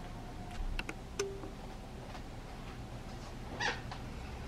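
Quiet room with faint handling sounds: a few soft ticks, a brief squeak about a second in, and a short rustle near the end.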